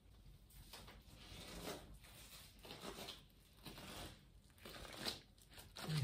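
Faint, irregular crinkling and rustling of a small paper item being handled, in about five short bursts roughly a second apart.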